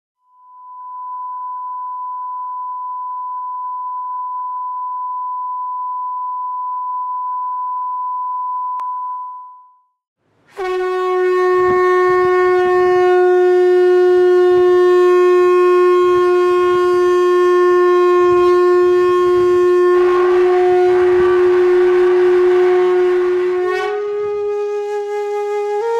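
A steady, plain high tone for about ten seconds, fading in and out. Then a conch shell (shankha) is blown in one long, loud note held for about thirteen seconds. The note grows breathier over its last few seconds and rises slightly in pitch at the very end.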